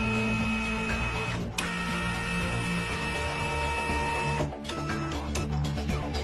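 A scanning sound effect over background music: a mechanical, printer-like whir with several held high tones. It breaks off briefly about one and a half seconds in and stops about four and a half seconds in, leaving the music.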